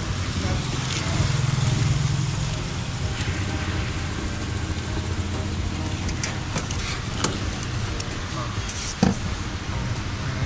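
A steady low hum runs throughout. A few sharp clicks and knocks come from handling the car's roof lining and antenna cable, about six to nine seconds in, with the loudest knock near the end.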